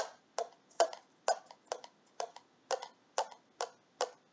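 A homemade paper-tube rooster noisemaker, a string threaded through a rolled paper tube, being played by tugging a wet paper towel down the string in small jerks. Each tug sets the string and tube squawking briefly, about three or four short squawks a second. It is meant to imitate a rooster crowing, but it sounds a little sick, almost like a chicken.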